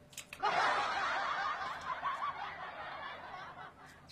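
A woman laughing softly in breathy snickers for about three seconds, fading out near the end.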